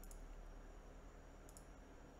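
Near silence: room tone with two faint clicks, one at the start and one about a second and a half later.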